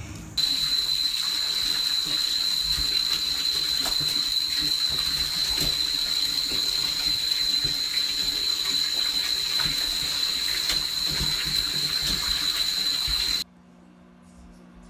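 Water running steadily from a tap into a bathtub, with a steady hiss that starts suddenly about half a second in and cuts off suddenly near the end.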